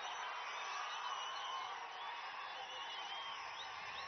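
A large crowd cheering steadily, with scattered whistles.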